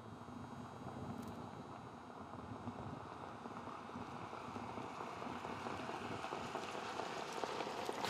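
Steady outdoor racetrack sound from the field of harness horses and sulkies moving up behind the mobile starting-gate car: an even noise with a faint low hum, growing slightly louder.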